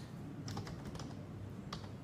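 Computer keyboard being typed on in a few scattered keystrokes, over a steady low hum.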